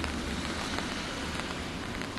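Steady rain, with scattered drops ticking on an open umbrella overhead and on wet pavement, over a low rumble.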